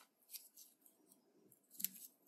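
Faint handling sounds of a coiled USB-C charging cable being lifted out of its cardboard box tray: a short rustle about a third of a second in and a brief, louder scrape near the end.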